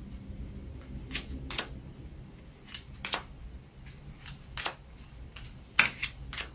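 Tarot cards being spread into a fan across a paper chart by hand: soft sliding with a few light, scattered clicks and taps.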